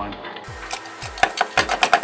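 A large LED wall pack's housing clicking and knocking against its wall-mounted back plate as it is seated, a quick run of sharp clicks in the second half, over background music with a steady beat.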